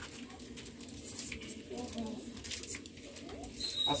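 Faint, steady cooing of a bird in the background, with a few light clicks and a faint murmur of voices.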